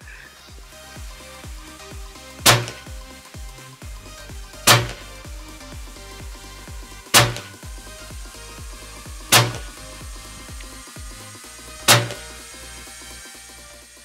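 Five shots from a Hatsan Hercules .30 calibre pre-charged pneumatic air rifle, each a sharp crack, evenly spaced about two and a half seconds apart, over steady background music.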